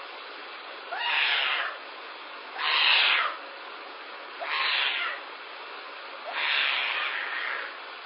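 A young pet crying out in its pen: four drawn-out calls, each just under a second long and sliding upward at the start, spaced about two seconds apart. Heard through a home security camera's microphone, with a steady hiss beneath.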